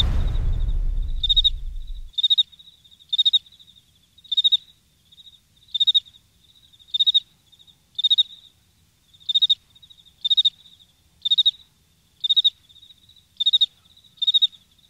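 Cricket chirping sound effect, a short chirp about once a second, used as the 'crickets' gag for a silence where nobody answers. A low tail of the preceding sound fades out about two seconds in.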